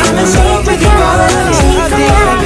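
Pop song mashup playing, with a steady beat and a melody line that bends in pitch, and no clear lyrics.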